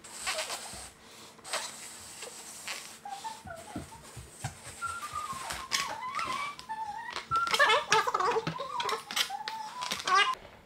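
A long spiral latex balloon being blown up by mouth: puffs of breath pushed into it, then squeaky, wavering rubber sounds from the stretching balloon that get louder through the second half.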